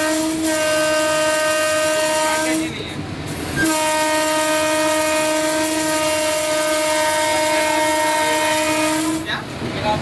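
Electric locomotive's horn heard from inside the cab in two long blasts: the first is already sounding and stops about two and a half seconds in, the second starts about a second later and holds steady for over five seconds. Steady running noise of the moving locomotive lies underneath.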